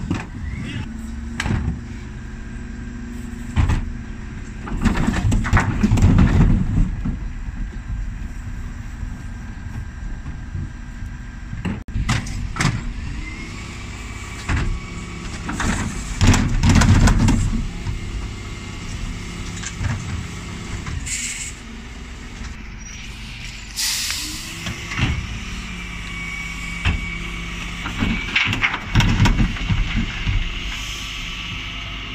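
Dennis Elite 6 bin lorry running at the kerb, its engine and lift hydraulics humming with the pitch stepping up and down as the Terberg lift cycles. About three times, roughly every eleven seconds, wheelie bins are tipped and emptied into the hopper with a loud clatter, with sharper knocks between.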